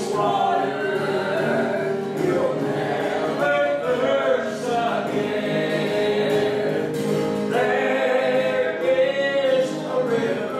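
A woman and a man singing a gospel hymn together to acoustic guitar accompaniment, the voices held and sustained in long phrases.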